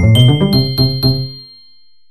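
Short musical outro jingle: about five quick chime-like notes over a lower pitched chord, ringing out and fading away by about a second and a half in.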